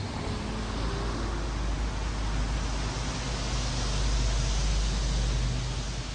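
Rainy street ambience: a steady hiss of rain with a low rumble underneath, swelling about four to five seconds in and easing near the end.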